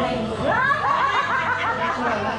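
A person laughing: a quick run of short, rising ha-ha notes starting about half a second in, about five or six a second.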